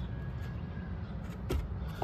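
A plastic aero-port extension segment being set onto the top of a subwoofer box port, with one light knock about one and a half seconds in, over a steady low rumble.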